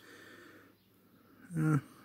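A faint breath through the nose, starting with one small sharp click, while small plastic parts are handled; a man's short 'uh' comes near the end.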